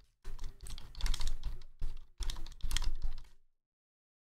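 Typing on a compact wireless keyboard: a few quick runs of keystrokes that stop about half a second before the end.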